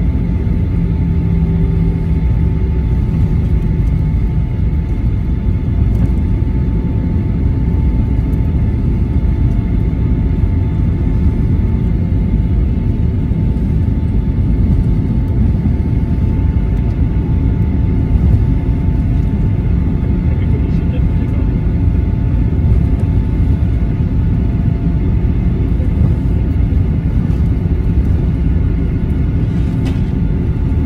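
Jet airliner cabin noise while the plane taxis on the runway: a steady engine rumble with a faint steady whine above it, holding an even level with no spool-up.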